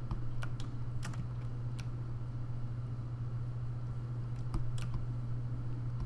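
Sparse clicks of a computer keyboard and mouse, several in the first two seconds and two more near the end, over a steady low hum.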